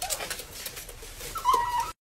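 Pets play-fighting, with scuffling and light clicks, a short falling whine at the start and a louder, steady high whine near the end.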